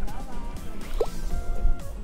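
Background music, with a single wet plop of a gas bubble bursting in a mud volcano's pool about a second in.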